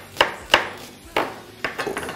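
Chef's knife chopping spring onion on a bamboo cutting board: about five sharp knocks of the blade on the wood, unevenly spaced.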